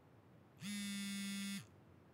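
Smartphone vibrating for an incoming call: one steady buzz about a second long, starting about half a second in.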